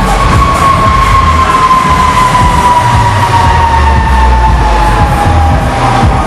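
Huss Break Dancer fairground ride's drive machinery running, heard from beneath the platform: a loud, steady low rumble with a whine that slowly falls in pitch.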